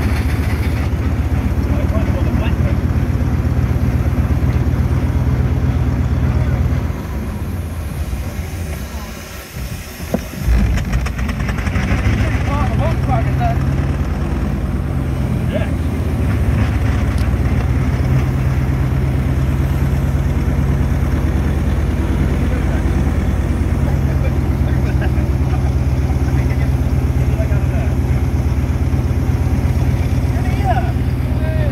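Foden steam wagon on the move, heard from on board: a steady low running rumble that drops away for a few seconds about seven seconds in and comes back abruptly about ten seconds in.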